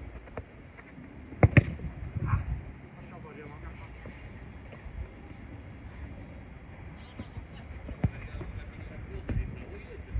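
A football being kicked on artificial turf: two sharp strikes in quick succession about a second and a half in, the loudest sounds here, then single kicks near the end.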